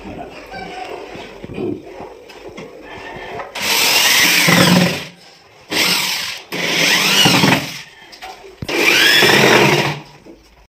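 Electric drill run in several short bursts of about a second each, its motor whine rising and falling in pitch, as a wooden cupboard door is fixed in place. Quieter knocking and handling come before the first burst.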